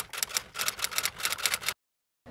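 Typewriter-style clicking sound effect accompanying an animated logo reveal: a quick, even run of key clicks, about eight a second, that cuts off suddenly shortly before the end.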